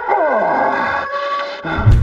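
A man howling in repeated falling cries over soundtrack music with steady held notes. The howling breaks off shortly before the end, and a sharp hit lands just at the close.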